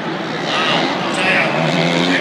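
Stadium crowd noise with nearby spectators talking, over a 250cc supercross dirt bike's engine revving as it rides past on the track.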